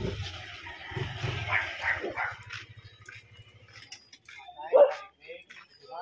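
A dog barking, with the loudest bark coming near the end.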